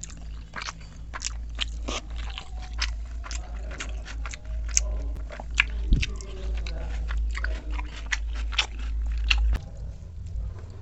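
Close-up eating sounds: a person biting and chewing a meal of pakhala water rice, egg omelette and raw cucumber-onion salad, with many sharp crunches coming close together. A steady low hum runs underneath and cuts off near the end.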